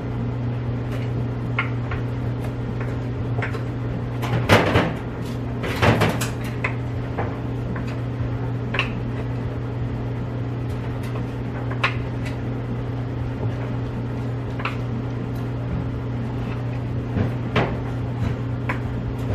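Plastic shopping bag rustling as laundry bottles and containers are lifted out and set down on a washer lid and shelf, with light clicks and knocks and two louder rustles about four and six seconds in. Under it, a clothes dryer runs with a steady low hum.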